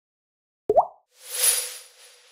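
Title-animation sound effects: a short rising plop about two-thirds of a second in, then a swelling, shimmering whoosh with a bright sparkling top and a faint held tone underneath, which peaks and fades.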